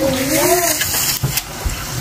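A voice holds a wavering note for about the first second, over a rushing, splashy water sound that carries on after the voice stops.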